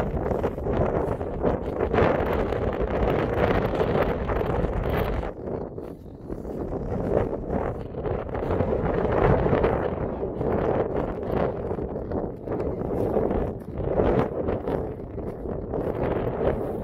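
Strong wind buffeting the microphone: a loud, low rushing noise that swells and eases in gusts, dropping off briefly about six seconds in.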